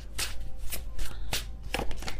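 Tarot deck being shuffled by hand to draw a card: a run of short card flicks and slaps, about two or three a second, over a low steady hum.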